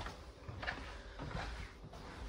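Faint footsteps and camera handling noise: a few soft, low thumps at uneven intervals as the camera is carried across the floor of a travel trailer, over quiet room tone.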